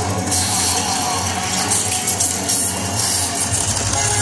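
Electronic intro music of a live rock concert, played loud through an arena PA, with sustained low synth tones and no steady drum beat. Heard from far back in the hall, so it sounds roomy and echoing.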